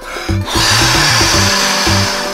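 Cartoon blowing sound effect as a soap bubble is blown up: a steady rushing whoosh that starts about half a second in. It plays over children's background music with a bass line.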